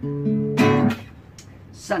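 Acoustic guitar ending a song: a chord rings from the start, a louder strum follows about half a second in, and the strings are stopped about a second in. A man's voice begins speaking near the end.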